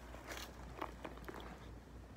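Patent leather handbag being handled and turned: a few short crinkling rustles, the clearest about a third of a second in.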